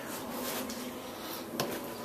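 Quiet room tone with a faint steady hum, broken by one small sharp click about one and a half seconds in.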